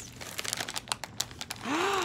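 Packaging crinkling and crackling as it is unwrapped by hand, then a short 'ooh' near the end that rises and falls in pitch.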